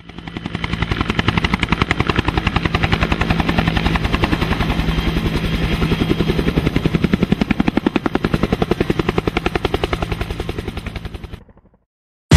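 Helicopter rotor sound: a fast, even chopping with a low hum beneath it. It fades in at the start and fades away shortly before the end.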